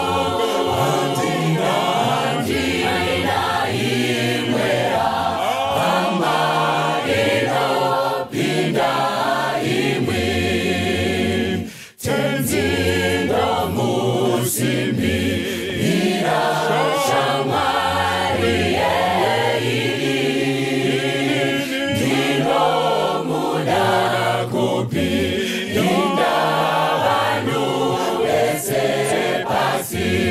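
Mixed choir of young men and women singing a cappella in several voices, with a brief break between phrases about twelve seconds in.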